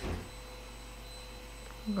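Quiet room tone: a steady electrical hum with a faint high whine, and a brief low thud right at the start.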